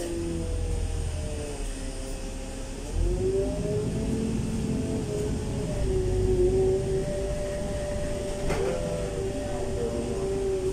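LiAZ 5292.65 city bus heard from inside while pulling away from a stop. Its drivetrain whine and low engine rumble step up in loudness and pitch about three seconds in as it accelerates, then hold steady. There is a single knock near the end.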